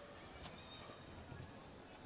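Badminton rally heard faintly: a racket strikes the shuttlecock about half a second in, and players' feet thud on the court.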